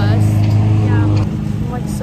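School bus engine running close by, a steady low drone that drops off somewhat a little over a second in.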